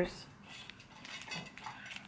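Faint handling noise from sheets of paper stickers being shuffled and held up: light rustling with a few small clicks scattered through.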